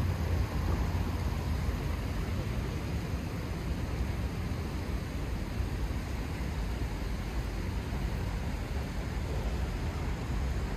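Steady city street ambience at night: an even low rumble of distant traffic with a soft hiss over it, no single event standing out.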